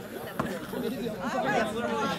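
Spectators chatting, several voices overlapping, with a single short click about half a second in.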